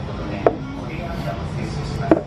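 A plastic drinking glass set down on a table with a single sharp knock about half a second in, over a steady low restaurant hum.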